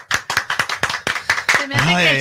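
Hands clapping a quick, even beat, about six or seven claps a second, keeping time for a vallenato song. Voices are faint underneath, and a man's voice comes in near the end.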